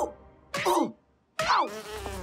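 Cartoon insect-wing buzzing of a bee-sized superhero darting past in two short passes, each falling in pitch, with a brief silence between them.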